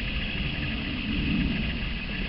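Steady low rumble with a soft hiss of outdoor background noise, with no distinct event standing out.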